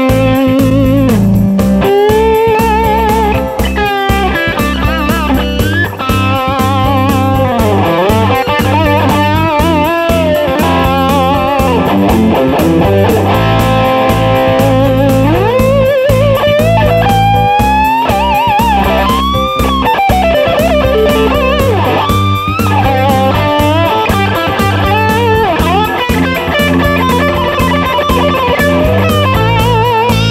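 Epiphone Casino Coupe semi-hollow electric guitar through an amp, playing a lead line with string bends and vibrato over a backing track with a steady bass part.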